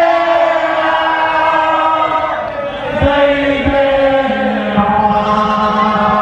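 A beatboxer's amplified vocals on a concert PA: several sustained, choir-like sung tones stacked over a held low bass note that steps down partway through, with a few deep kick-like thumps in the middle.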